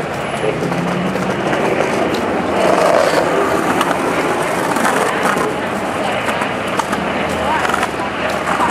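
Busy city street noise: steady traffic and a jumble of indistinct voices from passers-by.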